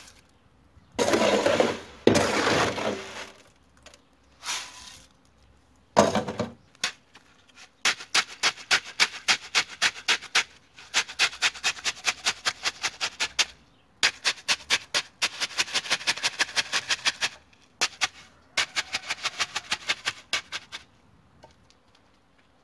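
Gravelly concrete mix poured from a metal scoop into a post hole with a gritty rattle. It is then tamped with a wooden batten in long runs of quick knocks, about five a second, with short pauses between runs.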